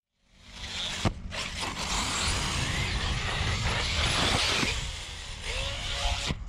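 Arrma Talion 6S RC car landing a jump with a sharp knock about a second in, then its electric motor and tyres running over loose dirt as a steady noisy rush that eases near the end.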